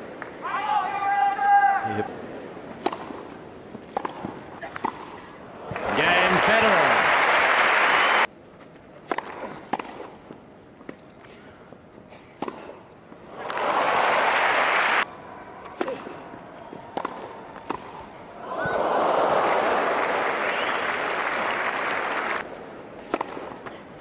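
Tennis ball struck back and forth with rackets, a string of sharp pops, between three bursts of crowd applause that each stop abruptly.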